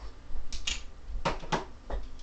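A handful of short, sharp clicks and knocks, about five in two seconds, as of small hard objects being handled, over a low steady hum.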